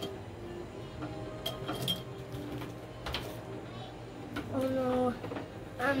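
Markers and crayons clicking and clinking against each other in a box as a child rummages through them. A short voice sound from the child comes near the end.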